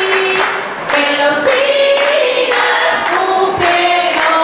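A woman singing into a handheld microphone, long held notes in short phrases, with other voices singing along.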